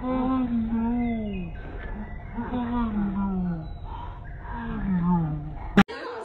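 A dog howling in about three long, drawn-out calls, each rising and then falling in pitch. A sharp click near the end where the sound cuts off.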